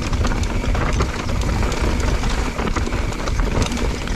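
Downhill mountain bike riding fast over a rocky dirt trail: tyres crunching over loose stones, with a dense, rapid rattle of the bike over the bumps and a steady low rumble.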